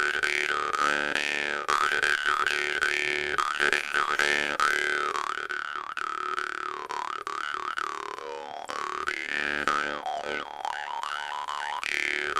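Bass jaw harp plucked in a steady seven-beat rhythm: a low drone under twanging overtones that shift with the mouth shape, with a slow downward overtone sweep about halfway through.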